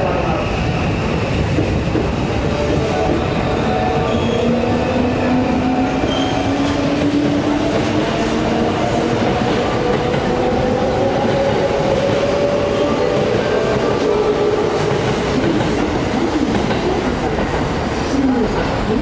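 Orange JR Osaka Loop Line electric commuter train pulling out of the platform and accelerating away: its traction motors whine slowly upward in pitch for several seconds, then even off, over the steady rolling noise of the cars passing.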